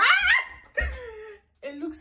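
A woman's excited, high-pitched laughter in quick bursts, trailing into one long falling squeal; she starts speaking near the end.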